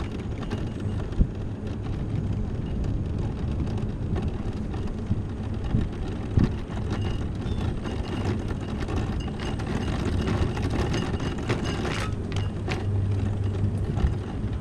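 Electric mobility scooter driving along a cracked asphalt road: a steady low motor hum with tyre rumble and rattling, and a few sharp knocks over bumps.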